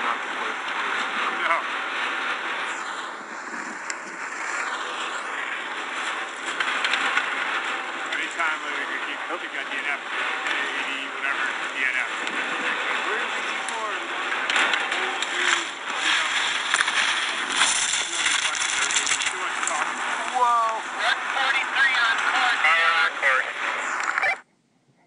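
Outdoor sound recorded with the race footage: a steady hiss with people's voices and shouts mixed in, busier in the second half.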